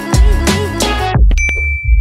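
Background music with a beat stops a little past one second in, followed by a click and a single bright notification-bell ding that rings on briefly: the sound effect of a YouTube subscribe/bell-icon animation.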